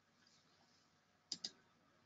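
Near silence broken by two sharp clicks in quick succession, about a second and a half in.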